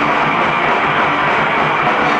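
A rock band playing live: electric guitars and a drum kit, loud and dense without a break.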